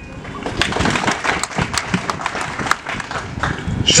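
Audience applauding: many hands clapping at once, picking up about half a second in and going on steadily.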